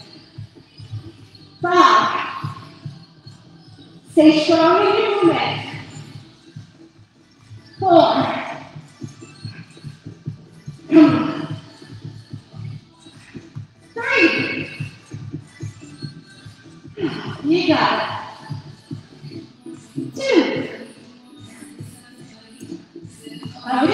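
Background music with a steady low beat, under short loud voice calls that come about every three seconds.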